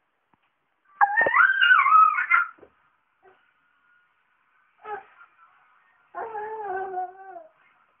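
A small child's wordless vocal sounds: a loud, high squeal that glides up and down about a second in, and a longer, lower call that slowly falls in pitch near the end.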